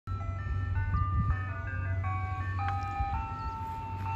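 Ice cream truck's chime playing a simple electronic jingle: a melody of clear single notes, each held briefly, stepping up and down in pitch, over a steady low rumble.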